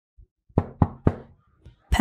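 Three quick knocks on a door, about a quarter second apart, each dying away briefly: someone asking to be let in.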